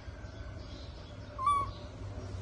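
A newborn baby monkey gives one short, high-pitched call about a second and a half in, over a steady low rumble.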